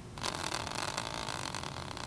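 A hand-spun team-logo prize wheel whirring on its stand, a fast rattle of fine clicks that starts just after it is set spinning.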